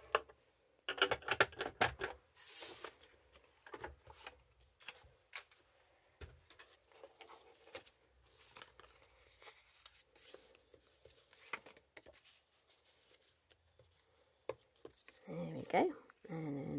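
Metal-tipped stylus drawn along the grooves of a plastic scoring board, scoring a strip of cardstock, with a cluster of scrapes and clicks about a second in. Then lighter paper handling as the scored card is lifted, folded along the score lines and shaped, with soft rustles and taps.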